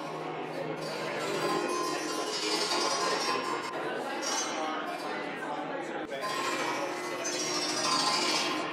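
A robot-played wooden harp, its strings plucked and ringing in many overlapping tones, over the chatter of a crowd in a hall.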